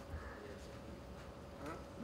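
Faint room tone: a low, steady hum with a thin constant tone running through it, and a small click just after the start.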